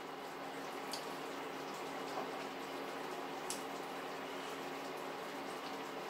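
Pepper and chickpea sauce simmering in a frying pan, a steady faint bubbling hiss, with two faint clicks of a spoon against the plate, one about a second in and another midway.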